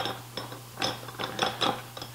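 Meat grinder parts being fitted together: the worm gear (auger) pushed into the grinder head, making a series of short, irregular clicks and clinks.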